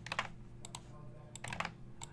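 Faint clicks from a computer keyboard and mouse, a few sharp clicks at a time in small clusters, as a list is selected, copied and pasted into a spreadsheet.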